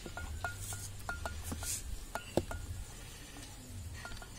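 Light metallic clinks, irregular and several a second, each with the same short ring, as a hand wearing a metal ring knocks against a stainless steel plate while rolling chicken pieces in flour. A steady low hum runs underneath.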